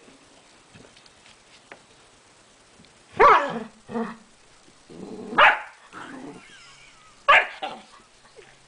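Two dogs, a golden retriever and a brindle puppy, squabbling over a toy: about five loud, sharp barks and growls, starting about three seconds in.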